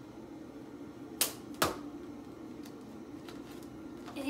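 Two sharp plastic clacks about half a second apart, a little over a second in, followed by a few faint ticks: hard plastic action figures knocking together as they are played with.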